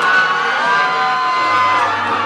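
Loud recorded music played over a nightclub sound system for a drag performance, with the audience cheering and whooping over it.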